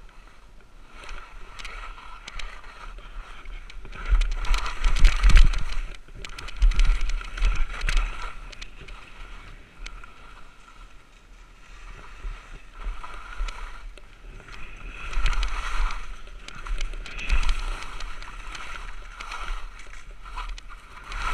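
Skis sliding and scraping over snow during a steep downhill run, the swishing coming in surges as the skier turns, loudest about four to eight seconds in and again around fifteen to eighteen seconds.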